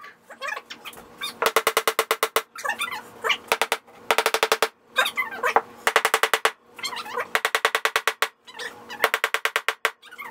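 Hammer pounding nails down into a wooden cleat on a particleboard panel, in four quick runs of strikes at about ten a second.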